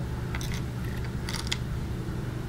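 A few faint, light clinks of metal necklace chains being handled and lifted from a jewelry box, over a low steady room hum.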